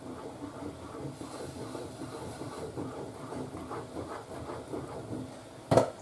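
Wooden spatula stirring a thick, hot croquette béchamel around a frying pan on the stove: a steady soft scraping and squelching with irregular small strokes. A sharper knock near the end.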